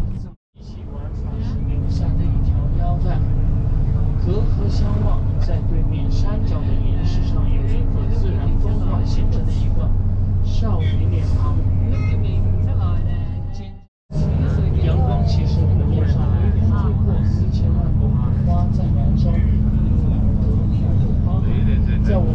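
Steady low engine and road rumble of a tour bus heard from inside the cabin, with passengers talking over it. The sound cuts out briefly twice, just after the start and about two-thirds of the way through.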